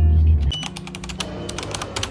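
Keyboard-typing sound effect: a run of quick, irregular clicks starting about half a second in, laid under on-screen text typing out. A deep low hum fills the first half second.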